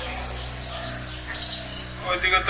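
A bird chirping: a rapid series of short, high chirps, about five a second, growing louder toward the end, over a faint steady low hum.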